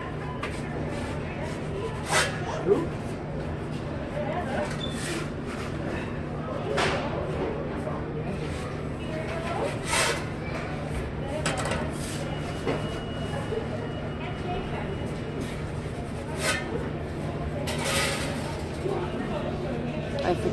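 Work at a pizza deck oven: about six sharp clacks and knocks a few seconds apart as a pizza peel is worked in and out of the oven, over a steady low hum and faint background voices.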